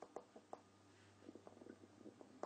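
Near silence with faint, light taps and ticks of a stylus writing on a tablet screen, thickening into a quick run of small taps in the second half. A faint low hum sets in early.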